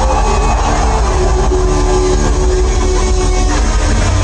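Live band music played loud over a concert PA, heard from within the audience: held notes over a steady heavy bass.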